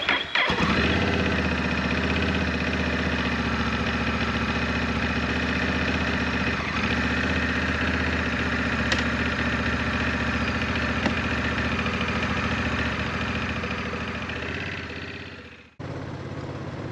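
Honda Rebel 1100 DCT's parallel-twin engine starting with a short crank, catching, then idling steadily. The sound fades out near the end.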